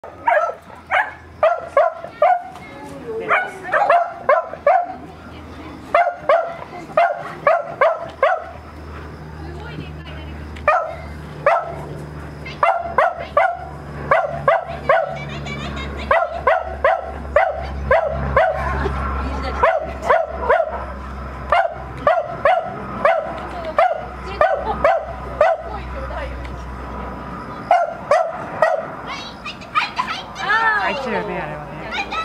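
A small dog barking over and over in high, sharp yaps, a few a second in quick runs with short pauses between them. A low steady rumble sits underneath from about nine seconds in until near the end.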